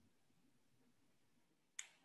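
Near silence, with one brief click near the end.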